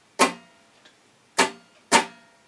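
A guitar strummed in a written practice rhythm. One chord is struck and left to ring for about a second as a half note. Two quick strums about half a second apart follow near the end as quarter notes.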